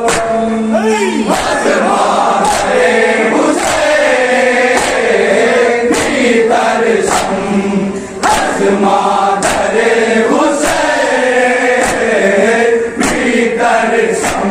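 A group of men chanting a noha together, with loud slaps of hands beating on chests (matam) in unison a little more than once a second.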